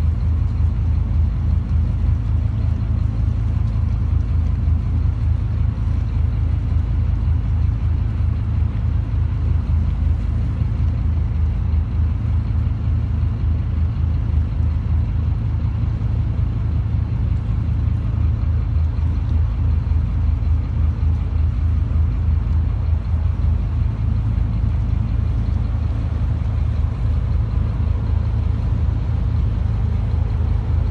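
Engine of a boat under way, heard from on board: a loud, steady low drone.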